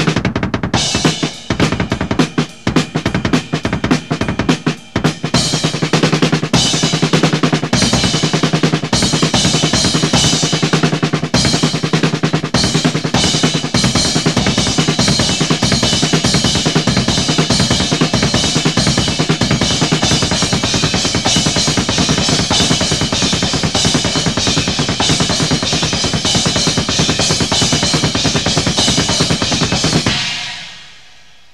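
Double-bass-drum kit played in eighth-note triplet patterns for beats, fills and solos. The first five seconds or so hold separate hits and short phrases with gaps; after that the playing runs dense and unbroken with cymbals, and it stops right at the end.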